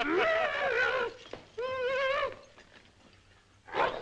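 A man's high, warbling comic cry, heard twice: one call about a second long, then a shorter one after a short gap.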